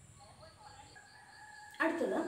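A faint, drawn-out animal call in the background: one held, pitched call lasting about a second and a half.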